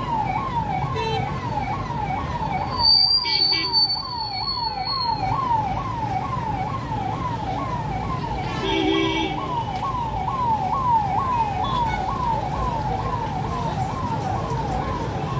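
Police vehicle siren wailing in a fast up-and-down sweep, about two cycles a second, over traffic and crowd noise. A high shrill tone sounds for about two seconds starting three seconds in, and a short horn honk comes near the middle.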